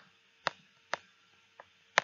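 Stylus tapping on a tablet screen while handwriting: about five sharp, separate clicks, roughly half a second apart, over a faint steady hum.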